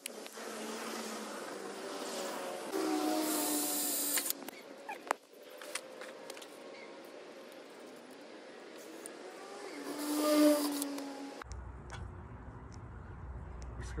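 Cordless drill running in two short bursts, about three seconds in and again around ten seconds in, the second louder, its motor whine rising and then holding steady as it works into the steel trailer fender to mount the lights. A few sharp clicks come between the bursts.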